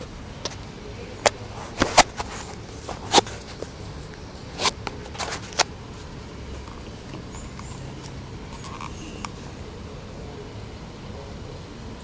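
Handling noise: a plastic-cased Dynojet Power Commander III fuel module and its wiring harness being picked up and turned over on a wooden tabletop, a string of sharp clicks and knocks in the first six seconds. After that only a steady low hiss.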